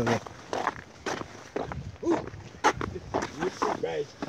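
Boots crunching on wet late-season ice while walking, about two steps a second.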